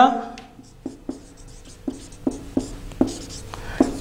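Marker pen writing on a whiteboard: a run of short taps and strokes, a couple a second, as letters are written.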